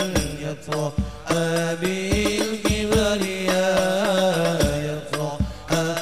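Several men singing an Arabic sholawat into microphones, the lead voice gliding through long ornamented phrases over a held low tone, with hadroh frame drums (rebana) beating low strokes underneath.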